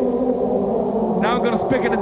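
A hardcore (gabber) track in a beatless breakdown over the party PA: a steady synthesizer drone of held low tones. An MC's voice comes through the microphone in short wavering bursts in the second half.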